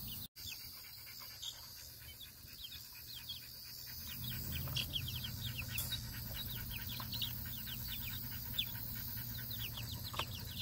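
Bantam chicks peeping: a steady stream of short, high, falling peeps from several birds at once. A low rumble joins in about four seconds in.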